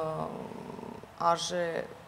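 Speech only: a voice talking, with a weaker drawn-out stretch lasting under a second between two short phrases.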